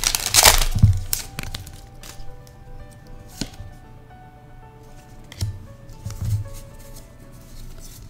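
Foil booster-pack wrapper crinkling and tearing open in the first second, then soft background music with a few light clicks of cards being handled.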